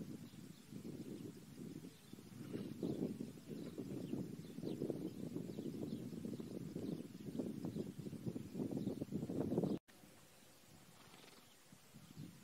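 Horse standing, with low, uneven rustling noise that cuts off abruptly near the end, leaving a fainter hiss.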